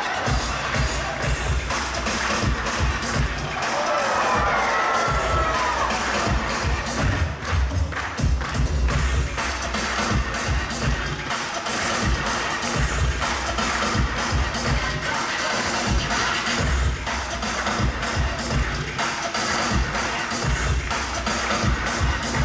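Show music with a steady beat played loud, with an audience cheering under it.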